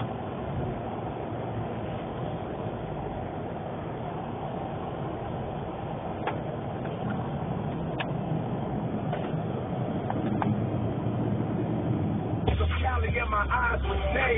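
Car cabin noise while driving slowly over a snow-covered road: a steady engine and tyre rumble that builds a little, with a few faint clicks. Near the end the car radio comes in with a heavy bass beat and rapping.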